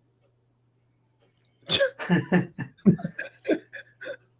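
A man laughing heartily: a quick run of loud 'ha' pulses that starts a little under two seconds in, after near silence. A faint steady low hum lies underneath.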